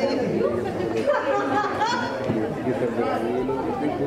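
Several people talking at once: steady, overlapping chatter of a small group in a room.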